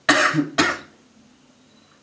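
A person coughing twice in quick succession, the first cough longer than the second.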